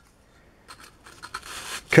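Razor saw starting to cut a block of Balsa Foam: faint scraping strokes begin about a third of the way in and grow louder.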